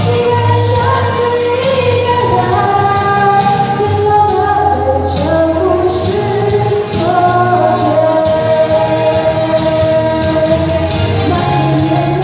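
A young woman singing a slow Mandarin pop ballad into a handheld microphone, holding long notes over instrumental accompaniment with a steady bass and light percussion.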